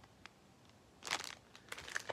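Clear plastic record sleeve crinkling as a vinyl LP and its cover are handled. A short rustle starts about a second in, after a near-silent moment.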